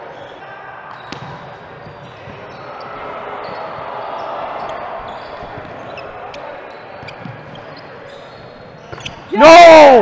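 A volleyball rally in a gymnasium: a few sharp ball hits and short high squeaks over the hall's steady background din. Near the end comes one loud, drawn-out shout of "Nooo" that falls in pitch.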